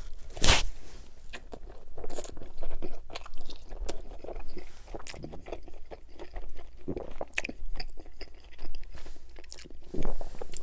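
A man biting into a slice of Pizza Hut pizza, with a sharp crunch of the crust about half a second in, then chewing it in irregular, close-up bites and crunches.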